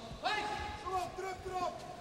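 Voices calling out at the ringside of a kickboxing bout, in drawn-out shouted tones that the speech recogniser did not render as words, starting suddenly a moment in.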